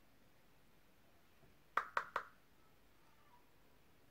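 Three quick light taps, about a fifth of a second apart, over faint room tone.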